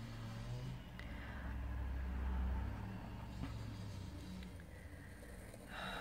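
Low engine rumble of roadworks machinery digging in the road outside, swelling a little about two seconds in and easing off again.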